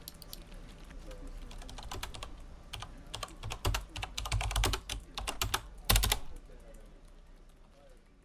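Computer keyboard typing: quick key clicks that grow denser and louder in the middle, with a few hard strikes, the loudest about six seconds in, then fading out.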